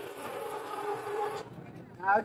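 Handheld fire extinguisher discharging in a steady hiss as it puts out a small fire, cutting off about one and a half seconds in.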